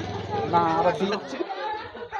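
Speech: people talking, with a steady low hum underneath that stops about a second in.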